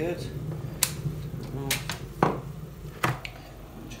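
Dualit Lite electric kettle heating with a low steady rumble that dies away about two seconds in. Four sharp clicks and knocks come from its switch and plastic base as it is handled and lifted off the base.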